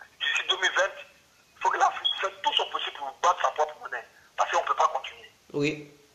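Speech only: a person talking in short phrases with brief pauses, with the thin sound of a telephone line.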